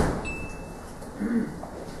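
A single sharp thump at the start over steady room noise, followed about a second later by a brief, muffled murmur of a voice.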